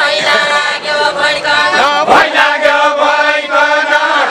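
A group of voices singing a Deuda folk song together in a chant-like chorus, holding long notes.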